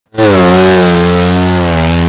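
Speedway motorcycle's 500 cc single-cylinder methanol engine running loud and steady under throttle on a test run of a new engine, its note dipping slightly in pitch near the end.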